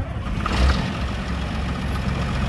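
Six-cylinder turbo diesel engine of a 1993 John Deere 7400 tractor idling steadily.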